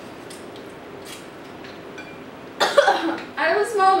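Faint clicks of chopsticks against ceramic bowls as noodles are eaten, then about two and a half seconds in a sudden loud cough from a woman, who then starts to speak.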